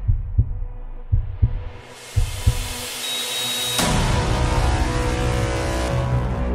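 Heartbeat sound effect in a trailer soundtrack: three double thumps (lub-dub) about a second apart, then the beats stop. A rising whoosh swells and, about four seconds in, a loud sustained chord of music takes over.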